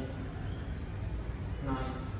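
A person's voice in short fragments, one right at the start and one near the end, over a steady low hum.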